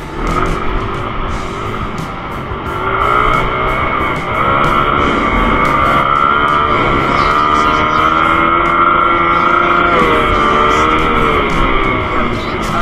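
Guitar background music over a dirt bike engine whose pitch rises and falls as the bike rides, getting louder about four seconds in.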